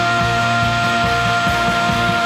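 Live worship band playing a rock-style song: a steady beat from drums and bass under one long high note held through the whole stretch.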